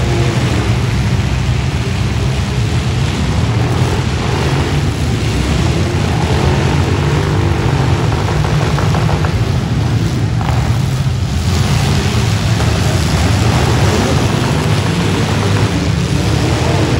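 Several demolition derby trucks and SUVs with their engines running and revving together, a loud, steady, low rumble.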